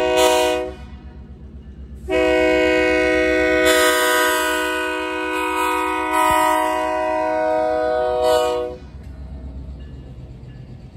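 Diesel freight locomotive's horn sounding for a grade crossing: a short blast, then a long blast held for about seven seconds until the locomotive reaches the crossing. After the horn stops, the low rumble of the train rolling past.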